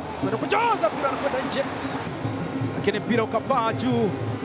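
A football match broadcast: a commentator's raised voice in short calls, near the start and again toward the end, over a steady low background, with a sharp knock about one and a half seconds in.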